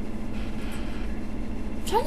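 Steady background hum and hiss, with no distinct events standing out.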